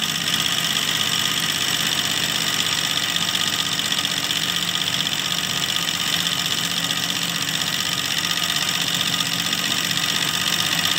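Embroidery machine stitching steadily, its needle running at a fast, even rate.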